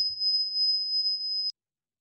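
A steady high-pitched whistle on the video-call audio, held at one pitch, that cuts off suddenly with a click about one and a half seconds in, leaving dead silence.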